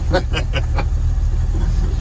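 Steady low engine and road rumble inside the cab of a 1954 Chevrolet 3100 pickup on the move, its 235 straight-six pulling through an automatic transmission. A man laughs in quick repeated bursts through the first second.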